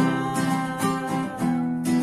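Acoustic guitar strumming chords in a steady rhythm, about two to three strokes a second.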